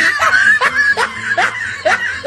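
Laugh sound effect: a person giggling in short rising bursts, about two or three a second.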